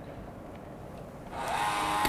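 A motorized smart deadbolt's small electric motor whines steadily for just under a second, starting about one and a half seconds in, as it throws the bolt on a remote unlock command.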